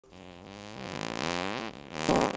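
A long fart lasting nearly two seconds, its pitch wobbling up and down, swelling in loudness toward the middle and tailing off near the end.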